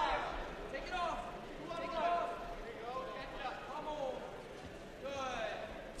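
Raised voices in the background of a gymnasium, fainter than close commentary, calling out in short phrases throughout.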